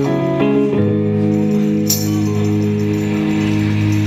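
Slow instrumental passage of live band music: a capoed electric guitar plays sustained chords, moving to a new chord under a second in. A single bright percussive hit comes about halfway through.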